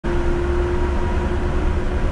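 A Yurikamome rubber-tyred automated guideway train running along its guideway, heard inside the car: a steady low rumble with a constant hum.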